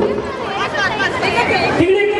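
Several women's voices chattering and calling out over one another, high-pitched, in a break in the music. Music starts again near the end.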